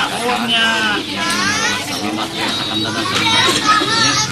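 Children's voices chattering and calling out, high-pitched with pitch sliding up and down, over lower adult speech.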